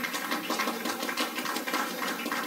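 Faint, scattered clapping from a congregation, steady through the pause.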